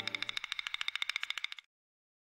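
A rapid, evenly pulsing high-pitched ticking, about fourteen pulses a second, over the tail of a low held tone that fades away early. The ticking cuts off suddenly about one and a half seconds in.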